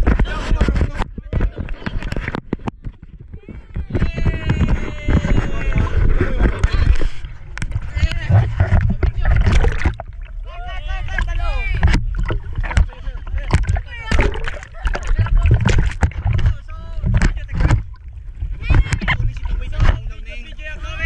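Seawater splashing and sloshing around an action camera held at the surface, with a heavy low rumble of water on the microphone. Voices shout excitedly at times.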